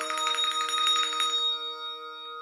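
Bell chimes, several tones held together as a closing chord. They shimmer with a fast tremolo of about ten strokes a second for the first second and a half, then ring out and fade.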